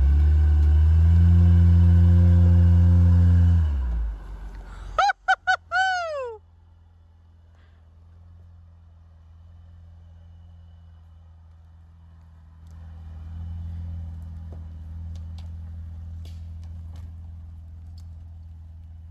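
Honda Ridgeline's 3.5-litre V6 revving hard and steady for about four seconds as the truck pulls itself out of a dug-out mud rut. A quick run of four falling squeals follows, then the engine runs low and steady as the truck drives slowly off, getting a little louder in the second half.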